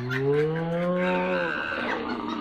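One long, low, drawn-out call, rising slightly in pitch and lasting about a second and a half, with a fainter higher sound after it.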